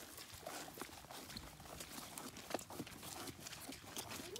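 Faint footsteps of rubber rain boots on wet, muddy ground, heard as irregular soft steps and clicks.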